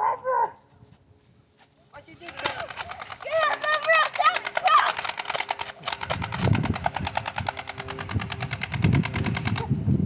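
A toy gun's electronic machine-gun sound effect: a rapid, steady rattle that starts about two seconds in and cuts off abruptly near the end, with voices shouting over its first half.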